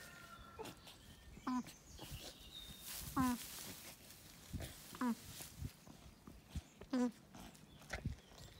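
Alpaca dam humming to her newborn cria: four short, pitched hums, one about every one and a half to two seconds.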